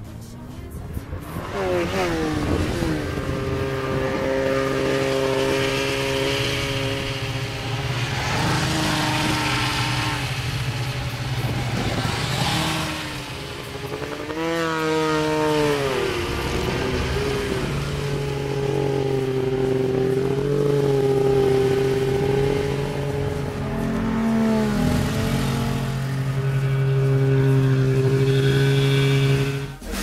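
Snowmobile engines running, their pitch rising and falling as the machines rev and ease off.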